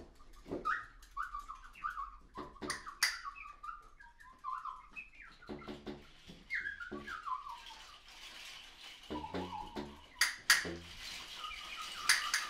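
Sparse free-improvised wind playing: short, chirping, whistle-like high notes that jump and slide about, scattered with sharp clicks. In the second half, short low reedy notes come in.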